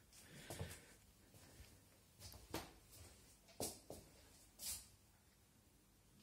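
Faint, soft footsteps: a few quiet steps roughly a second apart, in near silence.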